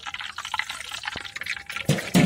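Hot oil sizzling and crackling in a large iron kadai, with a few stray bits of boondi still frying in it; a dense, even patter of tiny pops.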